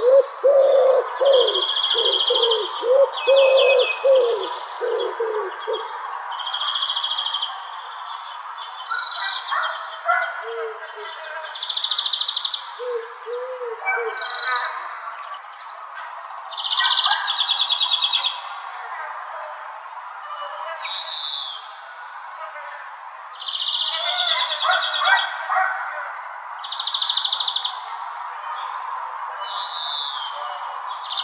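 Park ambience: songbirds chirping and singing in short phrases and trills throughout, over a steady background hiss. There is a run of low, rapidly repeated calls in the first few seconds.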